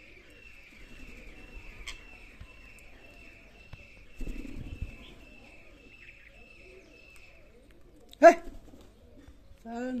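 A bird chirping repeatedly, short even notes about two a second, then a single loud, harsh squawk from a rose-ringed parakeet about eight seconds in. A brief low rustle comes about four seconds in.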